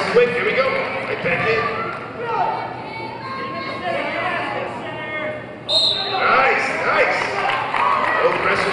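Several voices calling out over one another, echoing in a large gym, growing louder from just under six seconds in.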